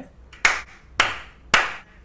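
Three sharp hand claps, evenly spaced about half a second apart, each trailing off briefly.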